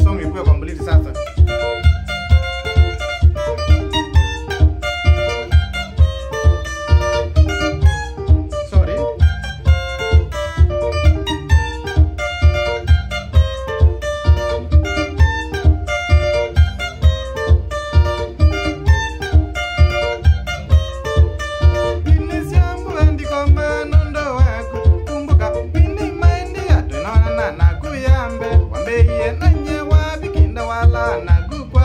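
Electric guitar playing a Kamba benga lead solo in quick picked single-note lines, over a backing track with a steady beat of about two beats a second.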